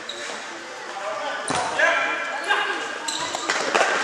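Futsal ball being kicked and bouncing on a sports-hall floor, with a sharp knock about a second and a half in and several more after it, amid players' and spectators' shouts, all echoing in a large hall.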